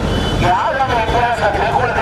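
Speech only: a man speaking loudly into a handheld microphone, over a steady low rumble.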